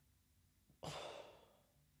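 A single heavy sigh about a second in: a sudden breathy exhale that fades away, with near silence around it.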